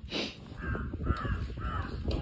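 A crow cawing, three caws in quick succession starting about half a second in, over a steady low rumble.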